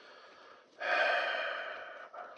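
A man breathes in softly, then lets out a long, loud sigh about a second in that trails away.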